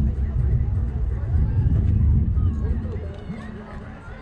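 Distant, scattered voices of players and spectators around a ballfield, over a strong low rumble that fades after about three seconds.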